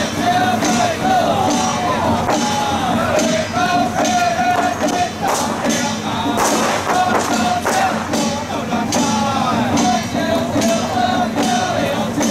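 Lively music: a wavering, ornamented melody over a steady beat, with a strong stroke about once a second.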